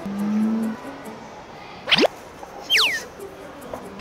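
Comic editing sound effects: a short low steady tone at the start, a quick rising whistle about two seconds in, then whistles swooping down in pitch.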